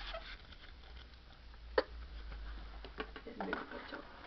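Quiet room with a steady low hum, broken by a single sharp click a little under two seconds in and a few faint ticks near the end.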